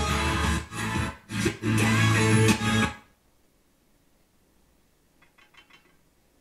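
Guitar-led music played through a Technics SA-700 stereo receiver, with two brief dips, stopping suddenly about three seconds in; near silence follows.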